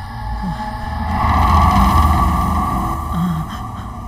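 A swelling rumble and whoosh on the film soundtrack that builds to a peak about two seconds in, then fades.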